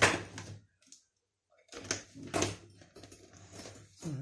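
A sharp knock with a short ring-out, then a second bump about two seconds later and scattered small clicks: equipment being handled and connected on a workbench.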